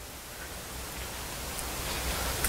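Steady hiss of room noise picked up by the microphone, with a low hum underneath, growing slowly louder.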